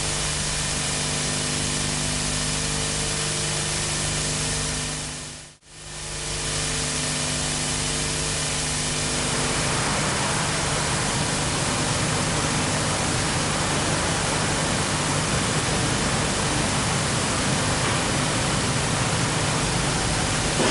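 Steady hiss with a low hum. It dips out briefly about five and a half seconds in, and the hum drops away about halfway through, leaving the hiss alone.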